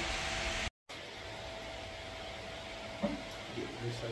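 Steady background hiss with a faint steady hum, broken by a brief dead gap about three-quarters of a second in where the recording cuts; the hiss is quieter after the gap.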